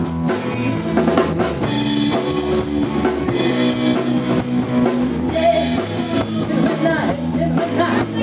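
Live blues band playing a song, the drum kit prominent over the other instruments with no singing.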